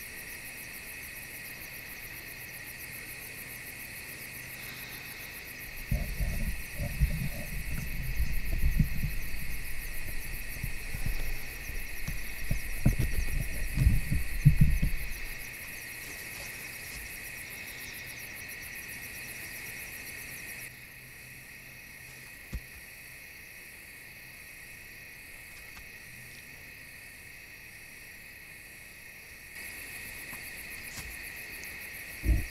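A steady high chirring chorus of night insects. From about six to fifteen seconds it is covered by a loud, low rumbling with irregular knocks, like the camera and tripod being handled. About two-thirds of the way through the insect chorus drops to a fainter level, and a single sharp click follows.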